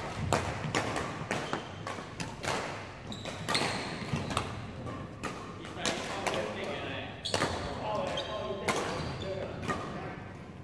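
Badminton rackets striking shuttlecocks, sharp cracks coming at irregular intervals from several games at once in a large hall.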